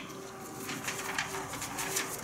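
Sheets of printer paper rustling faintly as they are handled and shuffled, over a faint steady hum.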